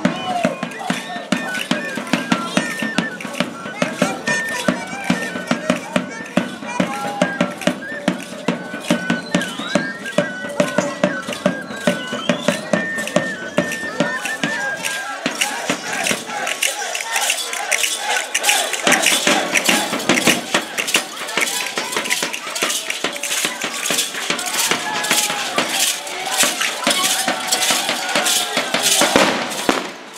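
Folk dance music for a street procession: rattling percussion keeps a quick, steady beat under a wavering melody, with the voices of people around.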